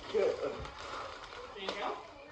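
Plastic mailer envelope crinkling as it is pulled and torn at by hand, between a man's short words.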